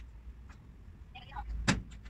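Flat-pack cabinet being assembled by hand: quiet handling of a part, then one sharp knock against the frame near the end, over a steady low hum.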